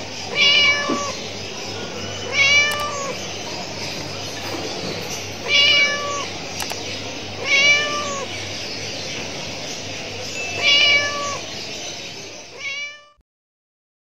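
A cat meowing repeatedly: five meows spaced two to three seconds apart, then a sixth cut short as the sound stops abruptly near the end. A steady low hum runs underneath.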